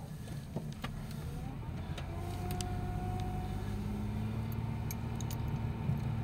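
Car engine and road noise heard from inside the cabin as the car drives off, with a faint whine rising in pitch about two seconds in. A few light clicks and rattles are scattered through it.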